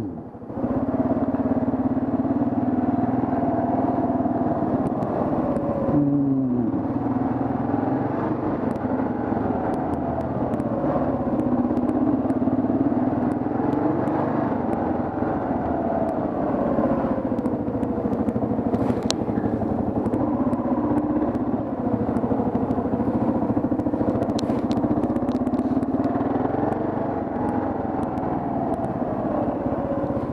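Kawasaki KLR650's single-cylinder engine running as the bike rides slowly, its pitch rising and falling with the throttle, with a quick drop in pitch about six seconds in.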